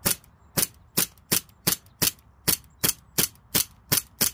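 Remington 1911 CO2 BB pistol fired in rapid semi-automatic succession: about eleven sharp cracks, roughly three a second and a little uneven.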